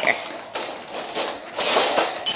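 Dog eating dry kibble from a stainless steel bowl: scattered taps and clicks of kibble and bowl, with a brief noisy rattle near the end. There is no growling.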